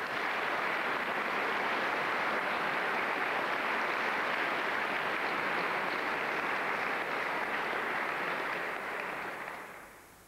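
Studio audience applauding steadily, dying away near the end.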